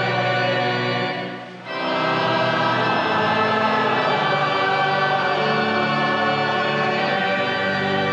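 A choir singing a hymn in sustained, held notes, with a brief drop in level about a second and a half in before the singing resumes.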